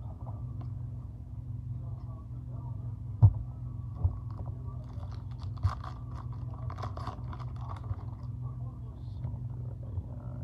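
A trading-card pack wrapper being torn open and crinkled by hand: a few thumps of handling, then a run of crackling rustles from about five to eight seconds in, over a steady low hum.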